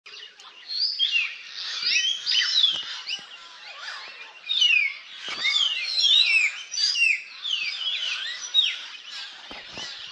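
Several birds singing together in a forest, with many quick, downward-sliding whistled notes overlapping one another. A few soft knocks are scattered through it.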